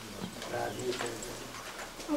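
A voice speaking quietly in short phrases, with pauses between them.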